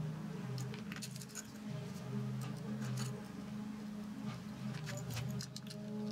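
Light, scattered metallic clicks and clinks of a screwdriver working on the small metal parts of a model aircraft engine, over background music with steady low notes.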